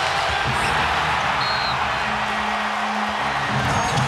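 Arena crowd cheering, a steady roar after a made layup, with a single held musical note from the sound system through the second half.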